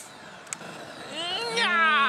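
Pachislot machine's speaker playing a high-pitched, voice-like cry about a second in. It rises and then glides down in pitch as the bonus announcement runs.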